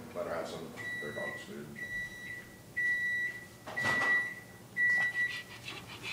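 Electronic beeper of a kitchen appliance timer sounding a steady high-pitched beep about once a second, five times: the alarm that says the cooking cycle is done.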